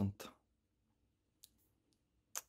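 The last syllable of a spoken word, then near silence with a faint short click about a second and a half in and a fainter one near the end, as an aluminium drink can is turned in the hand.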